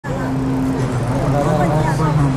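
City street traffic, engines running and idling, with people talking close by.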